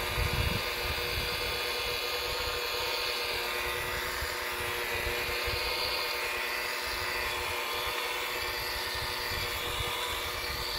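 DeWalt DWP849X variable-speed rotary polisher running steadily with a constant motor whine as its wool compounding pad works heavy-cut compound into oxidized fiberglass gelcoat.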